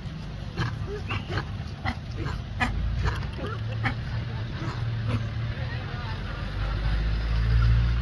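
Long-tailed macaques making a quick run of short squeaks and clicks in the first half. A steady low rumble runs underneath and grows louder near the end.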